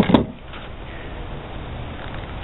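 Knife set down on a wooden workbench: a short knock and clatter right at the start, followed by a steady background hiss.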